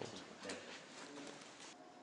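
Faint, low cooing bird calls over quiet room tone.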